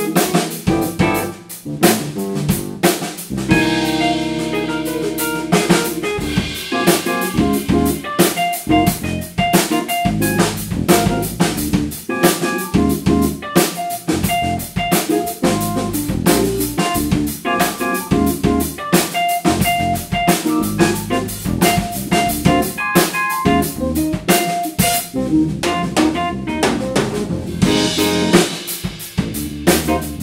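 A jazz-fusion band playing live: a Yamaha drum kit with snare and kick drum, an electric bass and electric keyboards. Cymbals wash in about four seconds in and again near the end.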